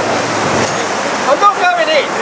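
Steady rushing wind and surf noise, with a voice starting to speak about two-thirds of the way in.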